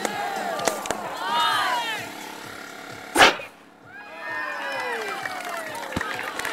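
People's voices calling out, with one short, loud thump a little after three seconds in.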